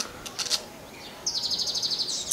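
A small bird calling: a few short high chirps about half a second in, then a rapid high-pitched trill from a little past the middle.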